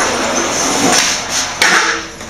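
Skateboard wheels rolling on a concrete floor, with several sharp knocks of the board in the second half.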